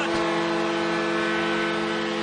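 Ice hockey arena goal horn sounding a loud, steady chord of several notes, signalling a home-team goal.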